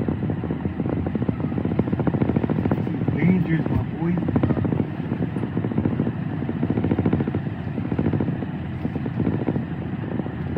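Semi truck's diesel engine running at low speed, heard inside the cab as a steady rapid pulsing while the rig reverses a trailer into a dock.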